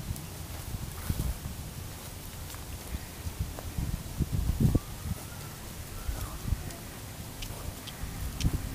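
Hoofsteps of a miniature pony walking on a dirt and wood-chip paddock, with the footsteps of the people leading it: soft, irregular thuds, heaviest about four to five seconds in.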